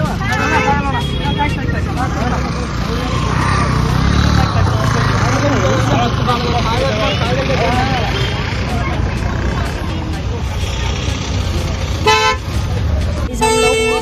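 Crowd chatter and street traffic, with a vehicle horn honking twice near the end, a short toot and then a longer one.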